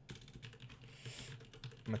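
Typing on a computer keyboard: a quick run of soft key clicks.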